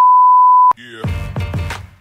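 Steady, loud beep of a TV colour-bars test tone, cutting off abruptly just before a second in. Music with deep bass hits starts straight after.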